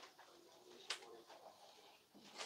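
Near silence: faint room tone with a single sharp click about a second in.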